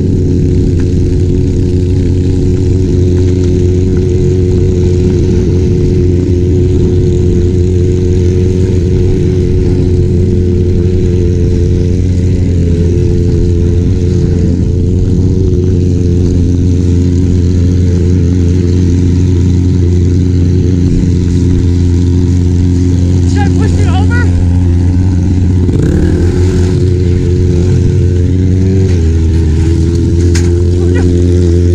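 Motorcycle engine running steadily at low revs close by, a constant drone that shifts pitch briefly near the end.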